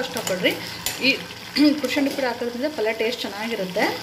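Metal ladle stirring and scraping sprouted horse gram curry in an aluminium pot, with a sizzle from the pan, as a voice talks over it.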